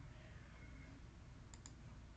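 Two quick computer mouse clicks, close together about one and a half seconds in, over faint room tone.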